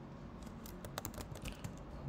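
Typing on a computer keyboard: a quick run of key clicks that starts about half a second in.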